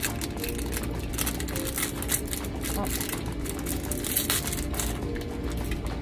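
Brush packaging being pried open by hand: a run of irregular crackles and clicks.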